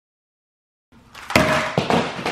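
About a second of silence, then a handful of compact digital cameras clattering down onto a wooden stool top, with a few sharp knocks.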